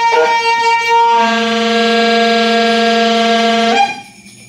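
Free-improvisation ensemble holding sustained, horn-like tones: a steady high tone, joined about a second in by a lower, buzzy, many-layered held chord. Everything cuts off suddenly just before the end.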